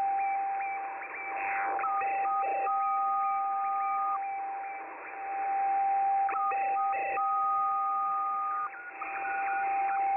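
Shortwave receiver in upper sideband at about 26.65 MHz playing an unidentified data signal in the 11 m band, over hiss. A steady whistle-like tone runs throughout, with a repeating cycle of short beeps and a held higher tone about every four and a half seconds. The listener cannot identify it and wonders whether it is a fax, pager or over-the-horizon radar signal.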